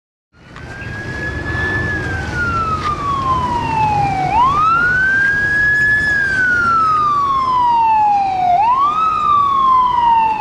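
An emergency vehicle siren cuts in and wails, each cycle rising quickly and then falling slowly, repeating about every four seconds. A low rumble runs beneath it.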